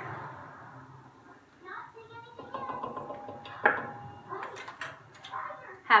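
Kitchen handling noises on a stone countertop: glassware being set down and picked up. There is one sharp knock a little past the middle and a few lighter clicks after it.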